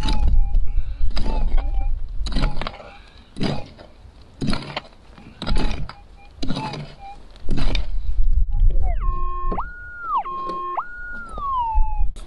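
A hand pick strikes into stony soil, about nine blows roughly a second apart. Then, about three seconds before the end, a Minelab GPX 6000 metal detector gives a warbling tone that rises and falls as its coil passes over the hole: a target signal showing that the gold nugget is still in the ground.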